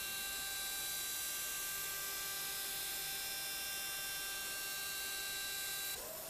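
Steady hiss with a faint electrical hum and a few thin, constant whine tones: the background noise of the soundtrack, with no distinct sound event.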